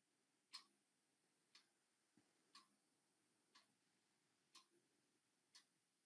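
Faint ticking of a clock, one tick each second.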